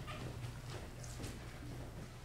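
Faint footsteps on a studio floor, a few soft steps, over a steady low hum.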